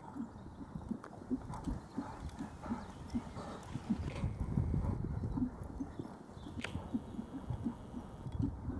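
Hoofbeats of a trotting horse on a sand arena surface: an even rhythm of soft, dull thuds, growing louder about halfway as the horse passes close by.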